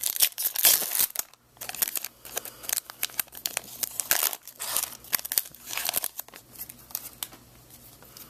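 A Pokémon booster pack's foil wrapper being torn open and crinkled by hand, in irregular bursts of crackling that ease off near the end.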